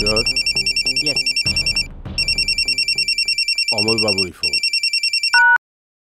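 A mobile phone ringing with a high, rapidly pulsing electronic ringtone in bursts of about two seconds. A short beep follows about five seconds in, and then the sound cuts off suddenly.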